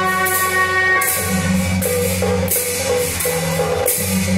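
Beiguan ensemble playing: suona shawms carry a held, reedy melody over drum, gong and regularly clashing cymbals.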